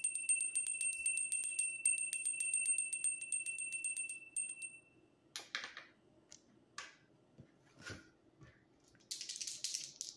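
Small handheld bell shaken rapidly, its clapper striking many times a second over a steady high ringing, for about the first four and a half seconds before it dies away. A few light knocks and handling noises follow.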